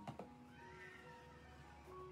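Quiet background music of held notes. Near the start there are two light clicks, and about half a second in a brief wavering, rising-and-falling high sound comes in, like a meow.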